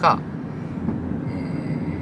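Steady road and running noise inside a moving car's cabin, a low rumble with a faint high whine in the second half.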